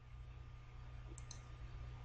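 Faint computer mouse clicks, two quick ones a little over a second in, over a low steady hum.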